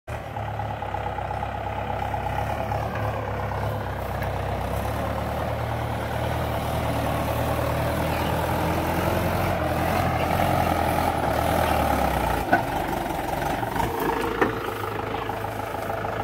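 Mahindra 575 tractor's four-cylinder diesel engine running hard under load as it pulls a trolley over rough grassy ground, with two sharp knocks in the last few seconds.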